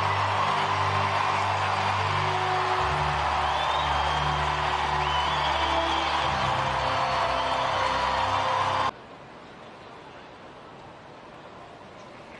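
Stadium PA music with held low notes that change every couple of seconds, over loud crowd noise celebrating a home run. It cuts off abruptly about nine seconds in, leaving a much quieter ballpark crowd murmur.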